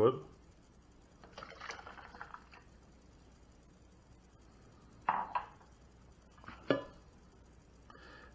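Water tipped from a ceramic mug into a plastic pitcher, a faint splash lasting about a second. Later come two light knocks of the mug and the carafe being handled on the stone countertop.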